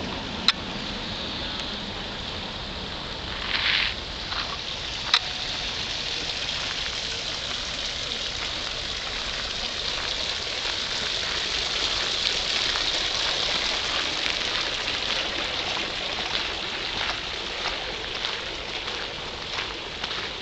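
Steady splashing of water from a stone garden fountain into its basin, a little louder through the middle, with a few faint clicks.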